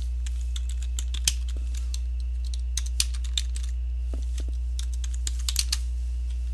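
Computer keyboard keys being typed in irregular short runs of clicks, over a steady low hum.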